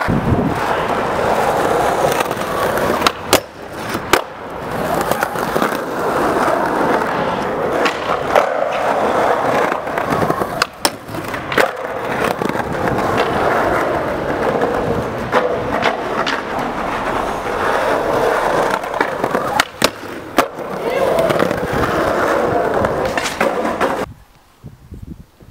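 Skateboard wheels rolling loudly over rough concrete, a continuous gritty roll broken by several sharp clacks of the board's tail and wheels hitting the ground.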